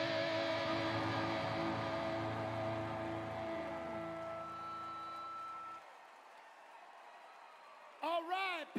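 The last chord of a heavy rock song ringing out on electric guitars, with held notes wavering as they slowly fade. The sound stops abruptly about six seconds in, leaving only a faint hiss.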